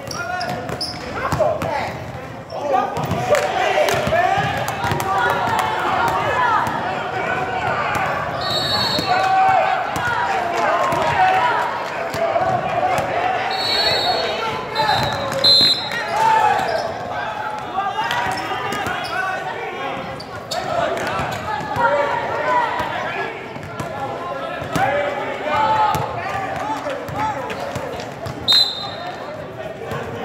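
Basketball game in a gym: a basketball bouncing on the court floor under continuous chatter from players and spectators, with short referee whistle blasts about 9 seconds in, twice around the middle, and near the end.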